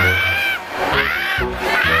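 Loud music with a heavy bass line, over which voices shout long 'Ah!' calls that rise and fall in pitch, three in a row.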